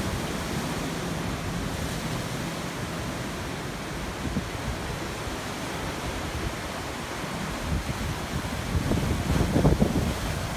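Ocean surf breaking and washing over sandstone rocks, with wind on the microphone; the rush swells louder near the end.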